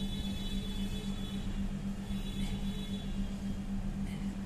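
A felt-tip marker squeaking on paper as a numeral and a dot are written: two short squeaky strokes, the second about a second and a half after the first ends. A steady low hum runs underneath throughout.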